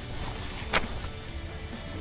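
Soft background music, with a brief rustle of a paper napkin wiping the mouth a little under a second in.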